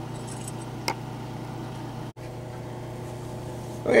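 Steady mechanical hum with a faint tonal drone, broken by one small click about a second in and a momentary cut-out of all sound about two seconds in.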